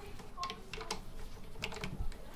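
String winder turning the tuning pegs of a steel-string acoustic guitar to slacken the strings: a series of light, irregular clicks.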